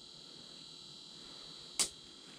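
Faint steady hiss with a thin, steady high-pitched hum, broken by one short click near the end.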